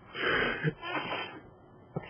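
A person's breath: two short, breathy puffs of air, each about half a second long.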